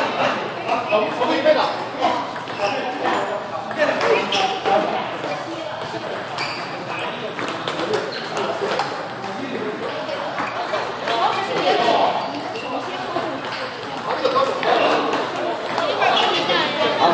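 Table tennis ball clicking repeatedly off the bats and table during rallies, with voices chattering in the background.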